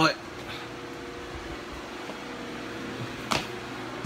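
A steady machine hum with a faint held tone, and one sharp click a little after three seconds in.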